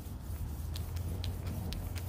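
Steady low background rumble, with a few faint soft crinkles from a plastic sandwich bag as a hand slides over car paint.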